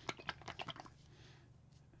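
A plastic acrylic paint bottle being handled: a quick run of small clicks and knocks, about ten in under a second, that stops just before a second in.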